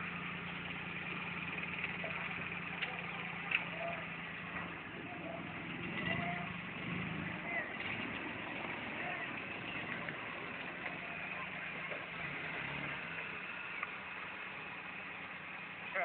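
Maruti 800's small three-cylinder petrol engine idling steadily, a low even hum.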